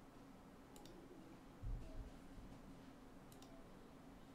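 Near silence with two faint, sharp double clicks of a computer mouse, about a second in and near the end, and a single low thump a little before halfway, over a faint steady hum.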